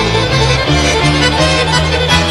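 Small folk band playing an instrumental passage: accordion over a bass line that moves in a steady, bouncing beat.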